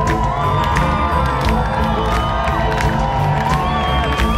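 Live rock concert: a crowd cheering loudly over the band's music, with drum hits and long held notes.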